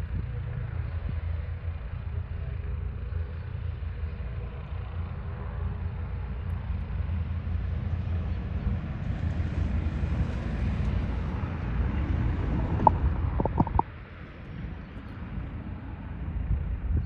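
Distant jet airliner engines running at taxi power: a steady low rumble with a hiss over it, and wind buffeting the microphone. A few sharp clicks come near the end, and then the sound drops suddenly.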